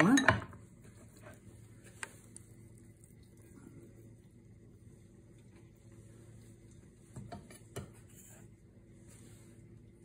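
A few light knocks and clicks of a chef's knife on a wooden cutting board and against a glass bowl as salami is sliced and moved, over a faint steady hum.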